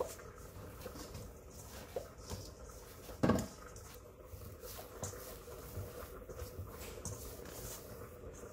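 Hands kneading soft flour-tortilla dough in a stainless steel bowl: quiet pressing and rubbing with scattered soft knocks, and one louder thump about three seconds in.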